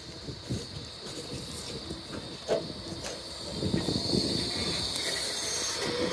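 Light-rail tram running slowly into a stop: a low rumble with scattered knocks, and a high hiss, both growing louder from about halfway through as the tram draws alongside.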